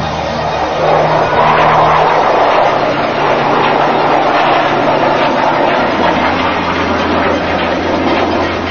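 F-16 fighter jet making a low display pass, its jet engine noise loud and rough, swelling about a second in and holding steady.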